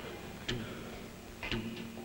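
Heartbeat imitated with sharp clicks, the beats coming in quick lub-dub pairs about a second apart, over a steady low hum.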